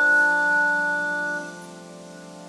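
Organ music: slow held chords, with a high note that stops and the music growing much softer about one and a half seconds in.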